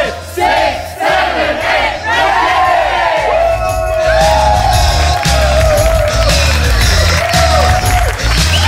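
Upbeat workout music with a heavy bass beat, and a group of voices shouting and cheering over it. The calls come short and overlapping in the first few seconds, then turn into long held shouts.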